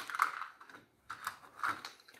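Light clicks and rubbing from the plastic and metal parts of a pressure-washer spray gun being handled, in three short scattered bursts.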